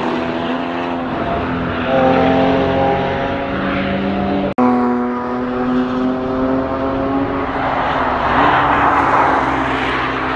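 Several cars driving hard through a track corner, their engines held at high, steady revs, with the pitch sliding down as one passes. The sound drops out abruptly for an instant just after halfway.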